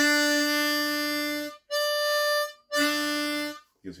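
Diatonic harmonica in C played in third position, sounding its root-note chord in three held blows of breath. The middle chord is shorter and higher, without the low note of the other two.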